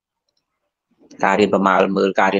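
About a second of dead silence, then a man's voice speaking Khmer.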